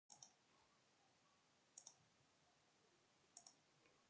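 Near silence broken by faint double clicks, each pair a quick click-click, repeating at even intervals of about one and a half seconds.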